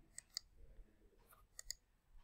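Near silence broken by a few faint short clicks: two close together early on and two more near the end.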